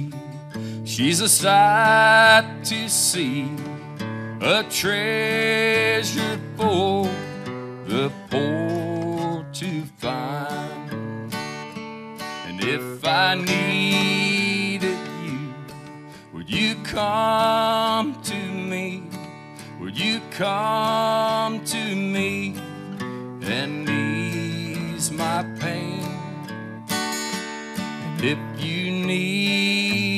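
Live acoustic guitar playing an instrumental passage: chords held under a melody line that slides between notes.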